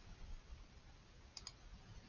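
Near silence, with two faint clicks in quick succession about a second and a half in: a computer mouse double-clicking.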